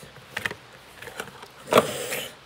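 Handling noise of a small cardboard box and a plastic makeup compact as it is unboxed: a few light clicks and taps, then a louder scrape near the end as the compact comes out.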